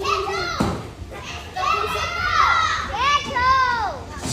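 Young children shouting and calling out excitedly, several high voices at once.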